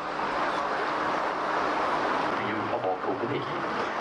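Steady rushing noise of an open canal tour boat underway, with faint voices of passengers in the background about two and a half seconds in.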